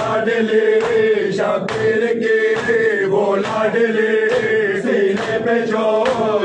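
A crowd of men chanting a nauha in unison, with rhythmic matam (hands striking chests) about once every 0.8 seconds.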